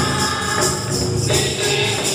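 A mixed church choir singing a gospel song together into microphones, with jingling hand percussion keeping a steady beat.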